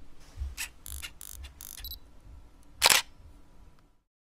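Camera sound effect: a run of small sharp mechanical clicks over the first two seconds, then one loud shutter click about three seconds in.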